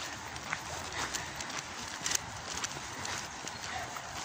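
Footsteps of a person walking on a dirt path strewn with fallen leaves, faint irregular steps over a low outdoor hiss.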